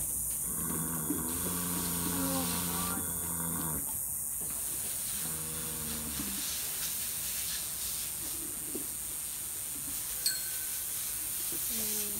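Steady hiss of a garden hose spraying water, with faint voices in the background and a single clink of metal tack hardware about ten seconds in.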